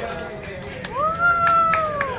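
One high voice lets out a single long cheer that rises, holds and falls away, amid a few sharp hand claps and the chatter of a crowded restaurant.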